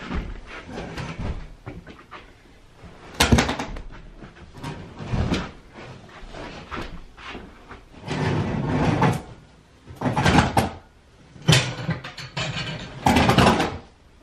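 Wall-to-wall carpet being pulled up and rolled by hand: a run of irregular scraping and rustling bursts, the loudest about three seconds in and several more from about eight seconds on.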